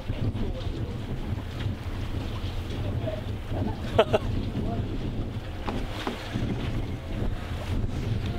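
Wind buffeting the microphone as a steady low rumble, with a short laugh about four seconds in.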